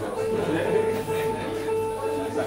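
Small live acoustic group playing, with one note held steadily throughout, and voices talking alongside.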